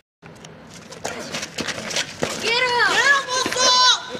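A scuffle of scattered quick knocks and steps on pavement while a group beats someone. From about two and a half seconds in, several voices shout in long rising-and-falling cries.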